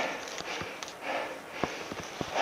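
A person breathing hard in short, noisy puffs, about one a second, from the exertion of climbing a steep slope. A few light clicks of footsteps on sticks and stones.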